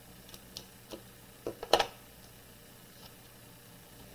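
Scissors snipping at a craft table: a few short, sharp clicks of the blades, the loudest just under two seconds in.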